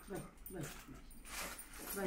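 A small white long-haired dog whimpering in excitement as it greets a returning family member: two short whines falling in pitch, about half a second apart.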